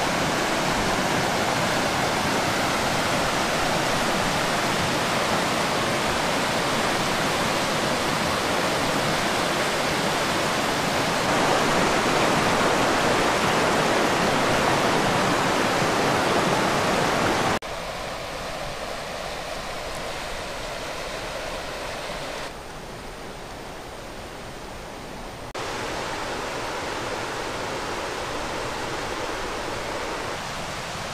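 Fast river rapids rushing over rocks in a steady rush of white water. It drops suddenly to a quieter rush a little over halfway through.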